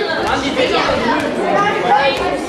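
Overlapping chatter of a group of young people in a large hall, with a few short knocks of the Headis ball on the table.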